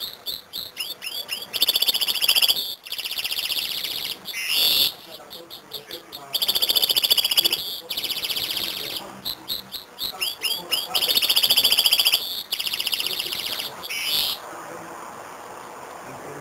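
Serin × canary hybrid singing a rapid, buzzy trilled song in a string of phrases broken by short pauses, stopping about two seconds before the end.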